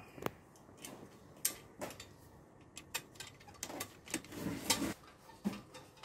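Irregular light clicks and taps of small metal parts being handled: a screwdriver working on the thread-stand fittings of an overlock sewing machine being dismantled.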